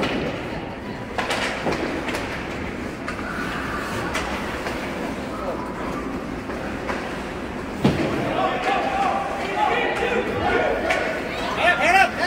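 Ice hockey game in a rink: a steady din broken by several sharp thuds, the loudest about eight seconds in, after which voices rise in shouting.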